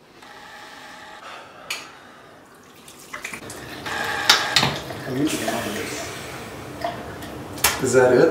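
Water running from a tap into a bathroom sink, with splashing as a face is washed and clinks of toiletries set down on the basin; it grows louder about three seconds in.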